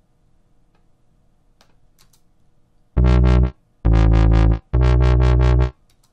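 Three loud, sustained notes played back on the Wub Machine, Soundation's wobble-bass software synthesizer, starting about three seconds in. Each note has a fast, pulsing wobble. A few faint clicks come before them.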